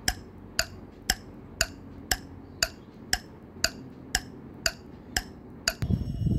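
Steady clock-style ticking, about two even ticks a second, marking a timed rest interval between exercises.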